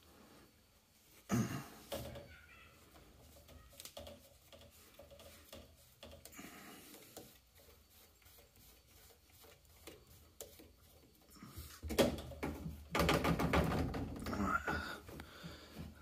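Plastic waste-pipe fitting on a boiler condensate line being unscrewed and pulled apart by hand to check it for a blockage: a sharp click about a second in, then small clicks and rubbing of plastic, with louder handling of the pipework in the last few seconds.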